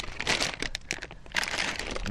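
Plastic packaging bag crinkling and rustling as it is picked up and handled, in short bursts.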